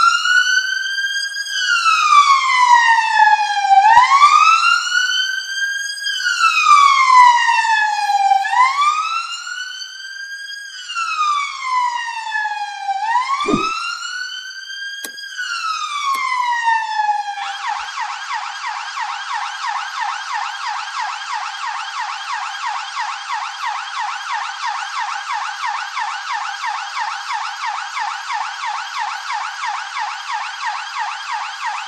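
Police siren sound effect: a slow wail rising and falling about every four and a half seconds, switching about 17 seconds in to a fast, steady warble.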